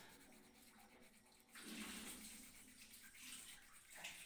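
Faint scratching of a coloured pencil's tip rubbing back and forth on paper as it shades in, growing louder about one and a half seconds in.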